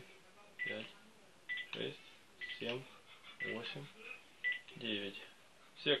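Keypad key tones of a Panasonic KX-TG2511 cordless phone handset: a short high beep with each button press, about one a second, five presses in a row. Each press now registers with a beep, a sign that the freshly cleaned keypad contacts work again.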